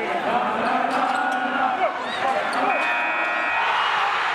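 Basketball arena sound effect: the steady noise of a game crowd with a ball bouncing, and a short steady high tone about three quarters of the way through.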